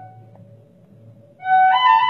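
Solo flute playing a melody: a long held note ends at the start, then a quiet pause of about a second and a half before a new phrase begins, its first note stepping up in pitch.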